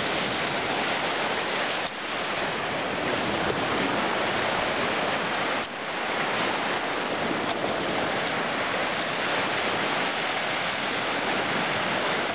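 Steady wash of lake surf breaking on a gravel shore, an even rushing noise with two brief dips about two and six seconds in.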